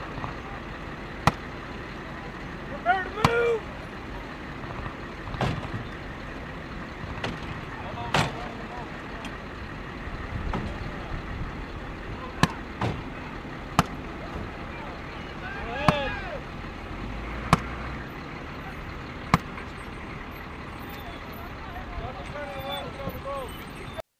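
Diesel engines of halted military vehicles (Humvees and a cargo truck) idling steadily. Sharp clicks cut in at irregular moments every few seconds, and brief fragments of voices come through now and then.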